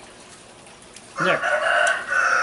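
A rooster crowing: one long, level call that starts a little past halfway through and carries on to the end.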